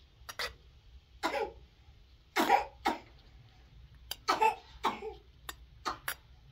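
A person coughing repeatedly, a string of short coughs, some in quick pairs, with a few brief clicks in between.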